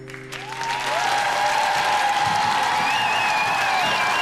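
Arena audience applauding and cheering, swelling about half a second in as the last held chord of the music fades out.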